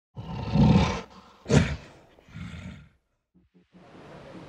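A deep roar in three bursts: a long loud one, a short sharp one about a second and a half in, and a weaker one near the three-second mark.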